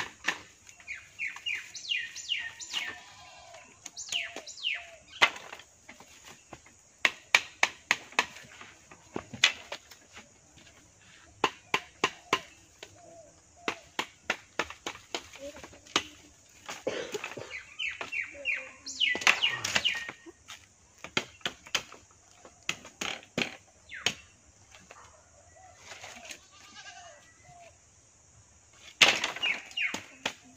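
Sharp knocks and clicks of bamboo sticks being handled and chopped while a frame is built, irregular throughout, with the loudest knock near the end. A bird calls in quick runs of short notes several times.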